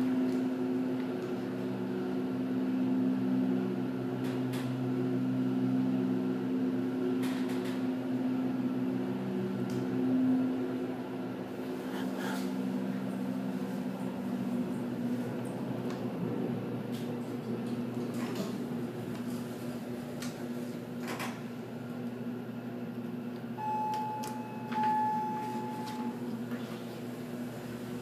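Steady low hum of a Mitsubishi hydraulic elevator car in motion, heard from inside the car, fading about halfway through. A few faint clicks, and one held electronic tone about three-quarters of the way in.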